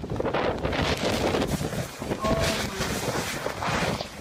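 Avalanche air blast sweeping over the camera: a loud, gusting rush of wind and blown snow buffeting the microphone.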